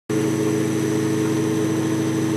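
Bedini SSG-style monopole pulse motor running steadily: an even machine hum made of several steady tones, which comes in suddenly just after the start.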